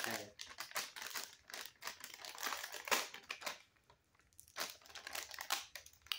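Plastic snack wrapper crinkling as it is handled, in quick irregular crackles with a short pause a little past the middle.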